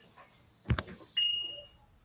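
A sharp click, then a short, steady, high-pitched electronic beep lasting about half a second.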